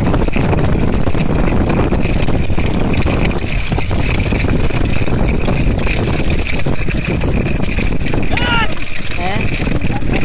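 Wind rushing over the microphone and a vehicle running as it keeps pace with a running bullock cart. A voice calls out briefly near the end.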